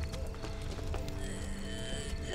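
Film soundtrack: sustained, sombre music tones held over a steady low rumble, with a few faint scattered knocks.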